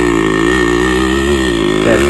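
Yamaha RX100's two-stroke single-cylinder engine running hard under heavy load as it strains to tow a tractor by rope, its pitch wavering slightly up and down.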